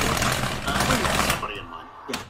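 A man's loud, harsh, rasping vocal noise, made with his tongue stuck out, that breaks off about three-quarters of the way through; faint talk trails after it.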